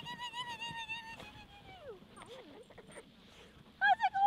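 Small dog whining: one long high whine held for about two seconds that falls away at the end, followed by fainter, softer whimpers.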